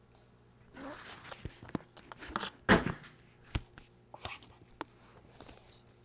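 Handling noise from a phone being moved while it records: rustling, then scattered clicks and knocks, the loudest a little before the middle.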